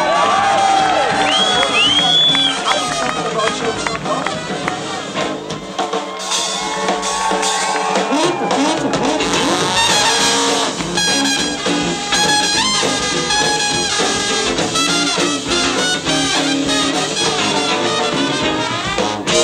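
A live jazz band led by trumpet and trombone playing together.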